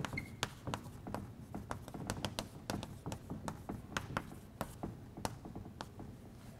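Chalk writing on a blackboard: a fast, uneven run of sharp taps and scratches as the letters go down, with a brief high squeak of the chalk just after the start.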